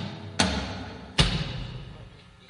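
Rock band music with two accented drum-and-cymbal hits a little under a second apart, each ringing out and dying away.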